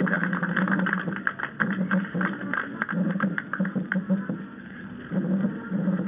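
Applause from a group of dignitaries, a dense patter of hand claps on an old narrow-band recording, with a low hum underneath.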